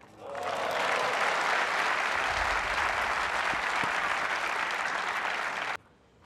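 Tennis crowd applauding after a point, the clapping swelling within the first second and holding steady, then cut off suddenly near the end.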